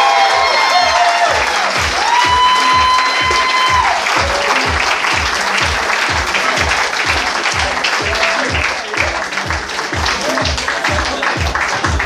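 Audience applauding at the end of a comedy set, over music with a steady kick-drum beat of about two beats a second. The clapping thins out a little in the last few seconds.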